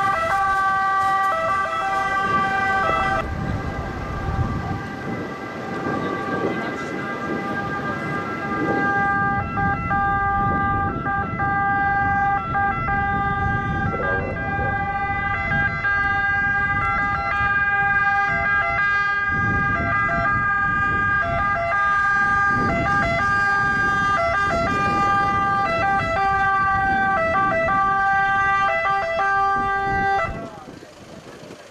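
Emergency-vehicle sirens sounding continuously, several steady tones at once with brief regular dips in pitch, over the rumble of vehicle engines.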